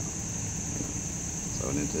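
Steady, high-pitched chorus of insects droning without a break, over a low rumble; a man's voice comes in near the end.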